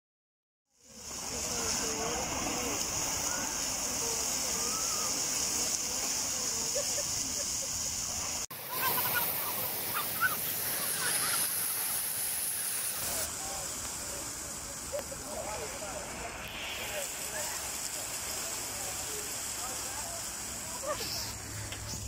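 Steady rushing spray of a dry-deck pavement fountain's water jets splashing onto the paving, with faint voices of people around. The water sound starts about a second in and changes abruptly about eight seconds in and again around thirteen seconds.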